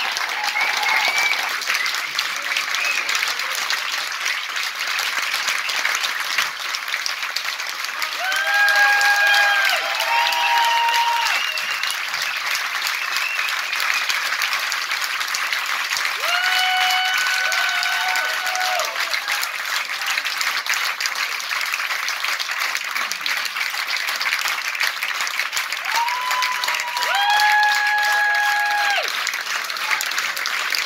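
Concert audience applauding steadily. Long, held high-pitched calls from the crowd rise above the clapping three times: about a third of the way in, near the middle, and near the end.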